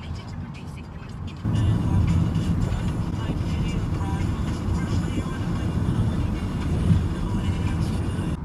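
A car driving along: road and wind noise comes in suddenly about a second and a half in and stays loud and steady, with music underneath.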